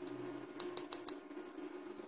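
A quick run of about five light clicks of fingers and fingernails on the plastic body of an LED bulb as it is turned in the hand, over a faint steady hum.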